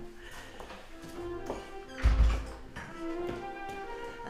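Background music of held notes that step from pitch to pitch, with a heavy low thump about halfway through.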